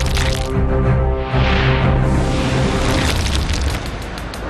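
Dramatic TV background music with a held deep bass note and sustained tones, and a whooshing swell that rises and fades about a second and a half in.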